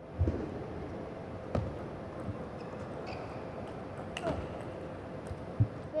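A few scattered knocks and thumps between table tennis points, the loudest just after the start and near the end, over a steady faint hum; no rally of ball hits. An umpire's voice calls the score about halfway through.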